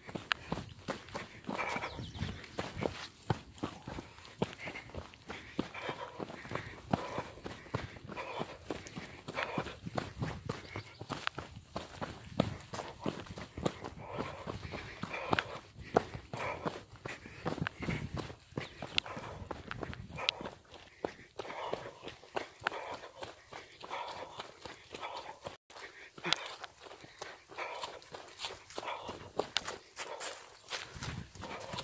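A trail runner's footsteps on a dry dirt trail, a steady run of quick footfalls.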